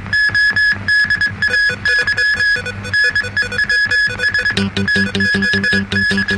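Electronic TV news theme music: a fast, repeated high beep-like note over pulsing chords, with deeper notes joining about four and a half seconds in.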